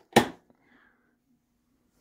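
A single short, sharp click just after the start, followed by near silence with a faint low hum.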